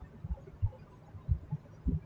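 A series of low, dull thumps at uneven intervals, about five in two seconds.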